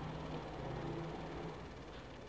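Steady low background hum with faint noise, dropping slightly in level near the end.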